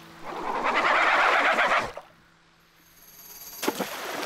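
A cartoon sound effect: a loud rushing noise lasting about a second and a half, cutting off about two seconds in.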